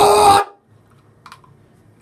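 A loud shouted word cutting off about half a second in, then quiet room tone with one brief faint sound just past the middle.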